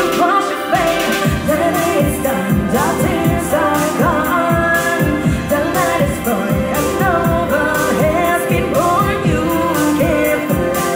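A woman singing a pop song live into a handheld microphone, over backing music with a steady beat.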